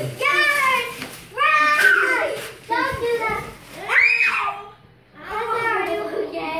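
Young children's voices calling out and shouting in play, high-pitched and without clear words, with one child's voice rising sharply about four seconds in.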